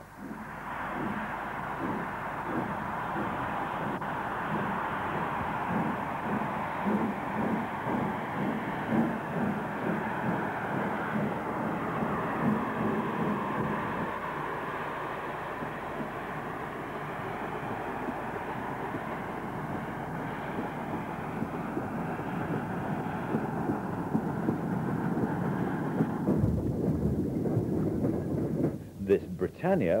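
Steam locomotive running: a steady rushing rumble with an irregular low beat. It cuts off abruptly about three and a half seconds before the end, leaving a lower rumble.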